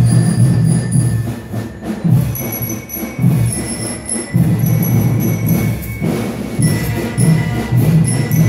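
School marching band (banda de guerra) playing: a steady drum beat with high, held bell-like notes ringing above it.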